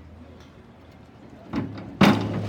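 Quiet poolside background with a steady low hum, then about one and a half seconds in a sudden loud knock and clatter from the diving springboard as the diver takes off; the splash of the entry begins right at the end.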